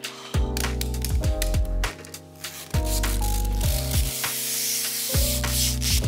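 Protective plastic film being peeled off a countertop oven's glass door, a ripping hiss that is strongest around four to five seconds in, over background music with a steady beat and bass.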